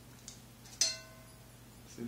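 A faint tick, then one sharp clink just under a second in that rings briefly with a clear tone: a brush handle knocking against ceramic painting ware.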